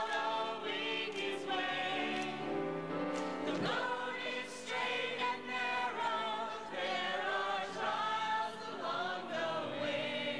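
A group of voices singing together in choir style, several sung lines at once.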